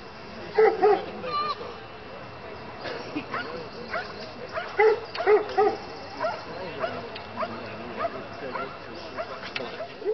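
A dog barking: two barks just under a second in, then a quick run of three more around five seconds in.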